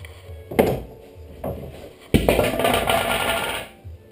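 A cordless drill with a quarter-inch bit runs for about a second and a half, cutting a pilot hole through a wooden template board into the board beneath. It starts suddenly a little after two seconds in and fades out. A couple of short knocks come before it.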